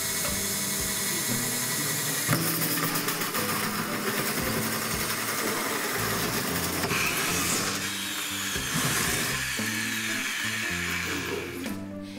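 Cordless drill turning a 43 mm hole saw that cuts through the ceiling: a steady whirring, grinding cut that gets louder about two seconds in. Background music plays underneath.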